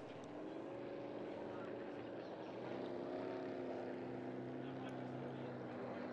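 A 6-litre displacement class ski race boat's engine running at speed, heard as a faint steady drone that rises slightly in pitch about halfway through.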